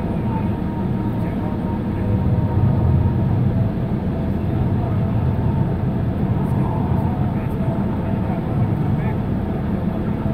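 Steady low rumble of a car heard from inside its cabin while it sits stationary, with another vehicle passing close by around the middle.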